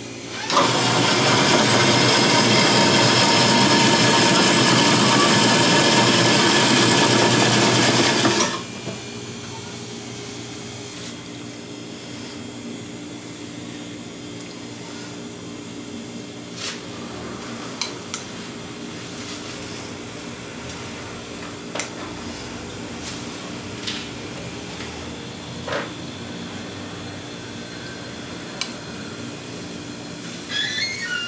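Electric snow-ice shaving machine running steadily for about eight seconds as its blade shaves a frozen snow-ice block, then cutting off suddenly. After that comes a low background hum with a few light clinks.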